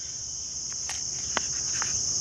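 Steady, high-pitched insect chorus buzzing without a break, with a few faint clicks from the plastic sheath and its strap being handled.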